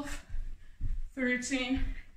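A woman counting exercise reps aloud, one number about every second and a half, with dull low thumps between the counts as her feet land on the floor during jumping touchdown jacks.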